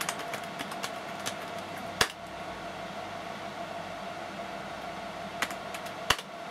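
A few scattered computer keyboard key presses entering a command, the sharpest about two seconds in and two more close together near the end, over the steady hum of computer fans.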